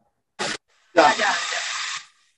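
Handheld gas torch on a yellow fuel cylinder: a brief puff of gas, then the torch burning with a steady hiss for about a second before it cuts off.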